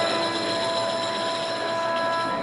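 Marching band sustaining a steady chord, its held notes ringing in the stadium.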